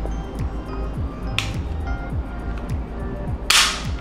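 Background music with a steady beat. Over it comes a single sharp click about one and a half seconds in: the hammer of an HK P2000SK pistol falling as its LEM trigger is dry-fired. A brief rush of noise follows near the end.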